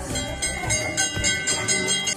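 Temple hand bell rung rapidly, its clapper striking several times a second over a steady ringing; the sound cuts off suddenly at the end.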